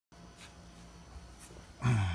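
A dog's short, low vocalisation, starting suddenly near the end and falling in pitch.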